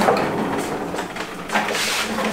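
A welding cart carrying a Hobart welder and its gas cylinder being rolled across a concrete floor, the casters rumbling and the load rattling, with a louder scrape about a second and a half in.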